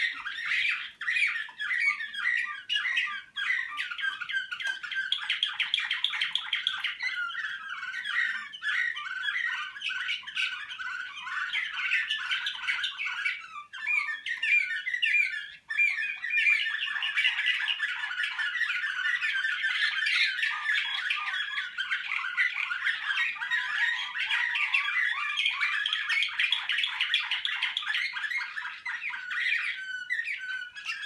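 Slavujar canaries, a singing canary type bred for nightingale-like song, singing continuously in fast trills and rolled phrases, with a brief lull about halfway through.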